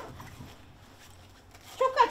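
A voice trailing off, then a quiet pause with only a faint low hum of room tone, before speech starts again near the end.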